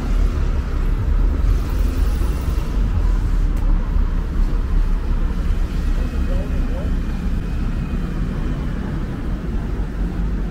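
City street traffic with a double-decker bus's diesel engine running close by, a steady low rumble throughout.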